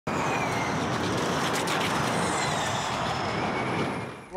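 Formula E electric race cars at speed: a high whine from the electric drivetrains, gliding in pitch, over a steady rush of tyre and air noise.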